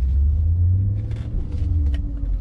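Deep, steady low rumble of a 2003 BMW E39 M5's naturally aspirated five-litre S62 V8 running at low revs, heard from inside the cabin, with a slight rise in pitch partway through.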